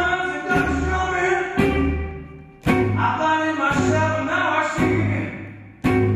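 Live 1940s–50s-style blues band: a man singing into a vintage microphone over a double bass. In the first half the band hits a chord about once a second, each dying away before the next, then plays on more fully.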